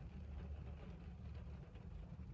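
Faint, steady low rumble inside a parked car's cabin.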